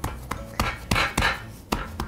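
Hands pressing and smushing bread dough into the corners of a metal Pullman loaf pan, the pan knocking and shifting on a wooden board in a quick, irregular run of knocks with soft scraping between them.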